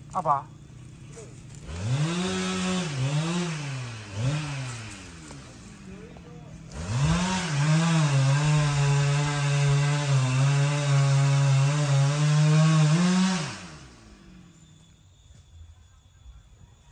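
Husqvarna 395 XP chainsaw revved in three quick blips, then held at a steady high speed for about seven seconds, revving up once more just before it cuts off.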